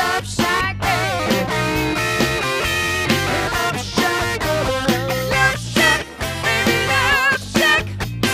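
Live band playing rock music: electric guitar carrying a wavering melodic line over steady low notes and a drum kit beat.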